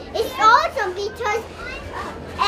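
A young boy talking in a high voice, two short stretches of words in the first second and a half, then quieter.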